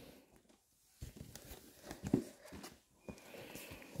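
Faint rubbing and light knocks of a large cardboard toy box being handled and turned over by hand, with one slightly louder bump about two seconds in.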